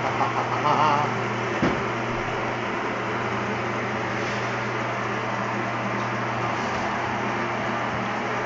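Electric motor of a Cove SH-5 chicken shredder running with a steady hum while it shreds cooked chicken breast, with a single knock about two seconds in.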